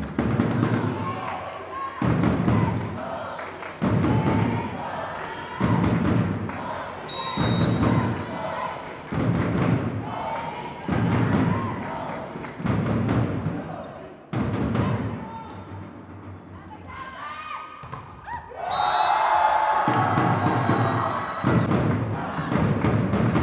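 A deep drum beaten roughly every one and a half to two seconds, with many voices chanting over it. Near the end it swells into louder, sustained group chanting.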